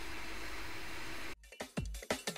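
Steady hiss of a JBC hot air rework gun blowing on an ASIC chip to melt its solder. It cuts off suddenly just over a second in, and electronic drum-and-bass music with heavy beats takes over.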